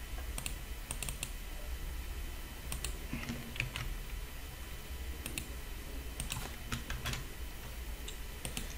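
Faint, irregular clicks of a computer keyboard and mouse, some coming in quick pairs.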